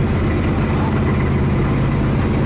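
Motorboat engine running with a steady low drone.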